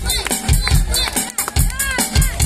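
Live amplified rock band playing outdoors: a steady drum beat with cymbals under electric guitar.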